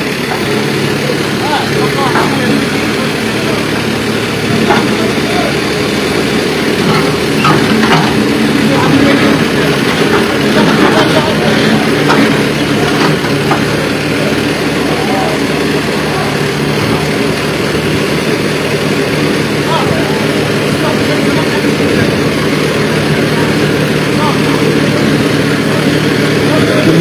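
Backhoe loader's diesel engine running steadily, with scattered knocks and clanks in the first half as its bucket works at a metal shop front structure.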